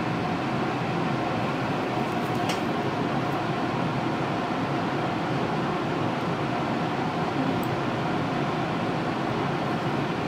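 Steady background hum and hiss of a room's ventilation, with two faint clicks of steel toenail nippers cutting a thick toenail, about two and a half and seven and a half seconds in.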